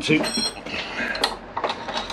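Small metal clinks and a brief metallic ring, then a few light clicks, as a hand tool works small screws into a metal bracket blind, by feel.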